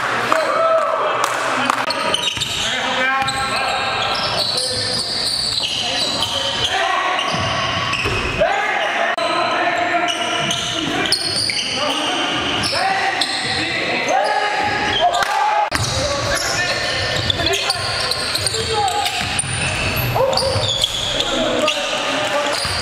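Basketballs bouncing on a hardwood gym floor during play, with players' voices calling out, echoing in a large hall.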